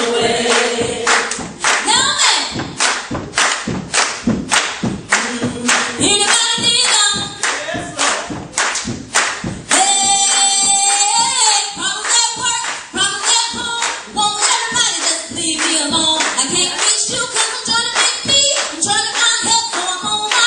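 Gospel singing, a woman's voice leading over other voices on a church sound system, with the congregation clapping along in a steady beat of about two claps a second.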